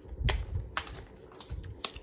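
A few sharp clicks and low handling noise as a tag is pulled off a zippered pencil pouch.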